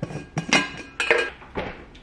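A stainless-steel insulated tumbler and its plastic lid being handled, giving about six sharp clinks and knocks with a brief metallic ring.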